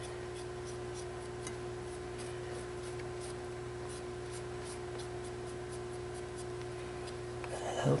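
Faint scraping and light ticks as crumbly sugar dough is scraped off a silicone spatula into a bowl by fingers and a utensil, over a steady low hum.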